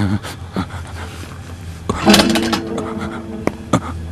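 A man panting and breathing heavily in pain, short uneven breaths.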